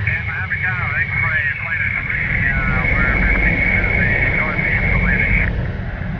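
Jet engines of large transport planes droning, with a high steady whine that cuts off near the end.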